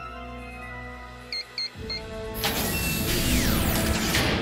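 Cartoon underscore music holding steady tones, then three short high electronic beeps about a second in. From just past halfway a loud rushing whoosh takes over, with a few falling tones through it.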